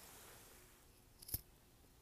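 Near silence with a faint steady hiss. A little over a second in comes one short, sharp click, with a fainter click just before it.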